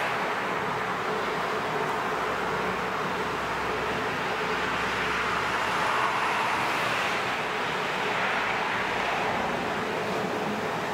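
Steady, even rushing outdoor background noise with no distinct events, of the kind distant traffic makes.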